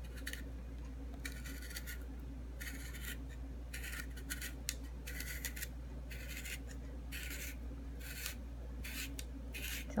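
Zucchini being twisted by hand against the fine blade of a handheld spiral slicer: short scraping rasps, about one or two a second, with each turn as thin noodles are cut.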